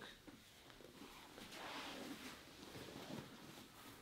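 Faint rustling and shifting of two grapplers' bodies on foam mats as they let go of a choke and get up, a little louder in the middle.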